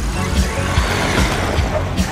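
A pickup truck's engine running as it drives, over background music with a steady beat of about two and a half beats a second.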